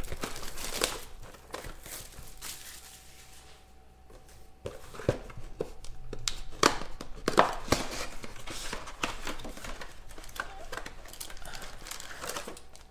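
Plastic wrap crinkling and tearing off a sealed 2016 Panini Phoenix Football trading-card box, with cardboard rustling and a run of sharp clicks and crackles as the box is opened and the packs are handled. There is a brief lull about four seconds in.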